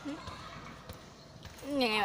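Low background ambience with a few faint knocks, then a girl's short spoken phrase near the end.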